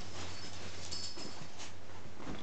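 Shih Tzu whimpering in faint, high, thin squeaks, twice briefly: once at the start and again about a second in. A steady low hum runs underneath.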